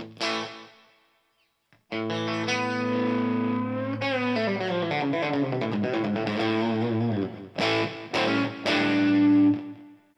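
Electric guitar played through an Origin Effects RevivalTREM overdrive and a Cali76 compressor, the drive cranked and the guitar's volume knob rolled all the way back. It gives a chord that dies away, then a phrase of held and bent notes and a few short stabs, ending on a long ringing note.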